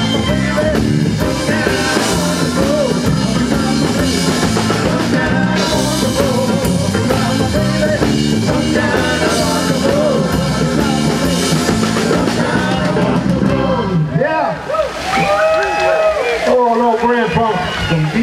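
Live rock band playing: electric bass guitar, drum kit and acoustic guitar through amplifiers. The song ends about 14 seconds in, and a man's voice follows.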